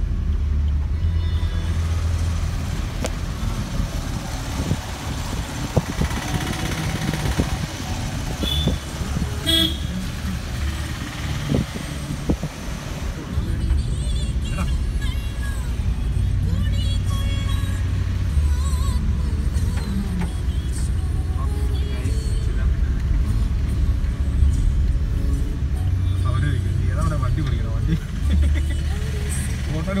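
Vehicle running on a wet road, heard from inside the cabin as a steady low engine and tyre rumble, with a short horn toot about nine seconds in.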